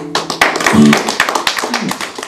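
Small audience applauding, a dense patter of hand claps that starts as the last acoustic guitar chord stops.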